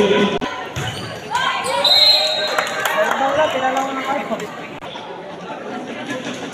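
Volleyball being played in an echoing gymnasium: a few sharp smacks of the ball in the first second, then players and spectators shouting and talking, loudest about two seconds in.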